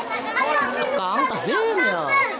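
A group of people, children among them, talking and calling out at once, with one high voice rising and falling in pitch about a second in.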